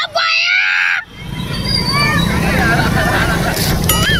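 About a second of a singing voice, then street traffic: a steady low rumble of motorbikes and auto-rickshaws with scattered voices calling out over it.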